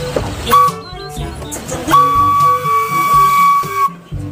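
Locomotive whistle: a short toot about half a second in, then a long steady blast of about two seconds, over background music.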